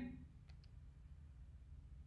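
Near silence: room tone, with two faint, brief clicks about half a second in.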